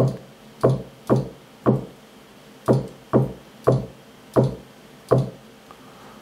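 Hardware synthesizer sounding short bass notes one at a time as they are entered in a MIDI sequencer, nine notes at uneven intervals, each with a quick downward sweep into a low, short-decaying tone.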